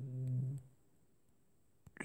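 A man's short, flat-pitched hesitation hum ("eee") lasting about half a second, then quiet with one faint click near the end.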